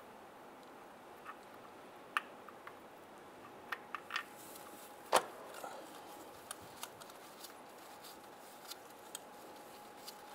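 Scattered faint clicks and taps of a metal socket and bolt against the engine's cast housing as a starter mounting bolt is worked into its hole by hand, the loudest click about five seconds in, over a faint steady hum.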